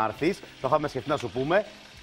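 Voices talking in short bursts, with a faint sizzle of food frying in the gaps.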